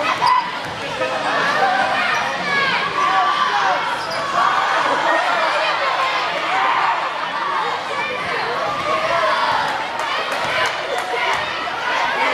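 Basketball bouncing on a hardwood gym floor, with a run of dribbles near the end. A crowd chatters and shouts throughout, echoing in the large gym.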